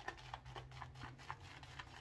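Faint, irregular clicking and crackling of a badger shaving brush whipping tallow-based shaving soap into lather in a bowl.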